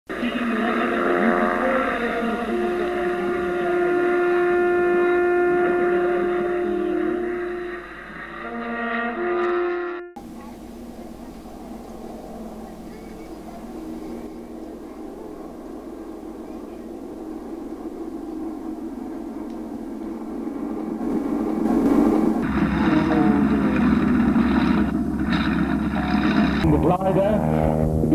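Opening music of long held horn-like notes, cut off abruptly about ten seconds in. Then outdoor camcorder sound of an aircraft formation flying over: a steady engine drone under wind-like noise, growing louder from about 22 seconds in.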